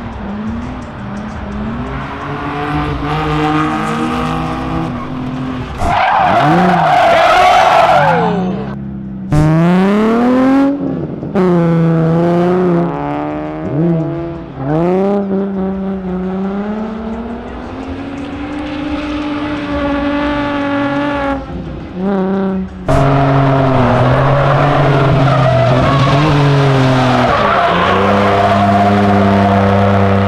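Drift cars' engines revving hard and falling back again and again, with tyre squeal, over a string of short clips cut one after another. In turn a Nissan 350Z, a Subaru Impreza hatchback and a BMW 3 Series sedan slide sideways.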